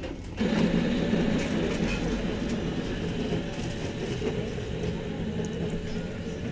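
A bean-to-cup coffee machine starts making a cup about half a second in: a sudden, loud, steady mechanical whirring and humming that eases slightly toward the end.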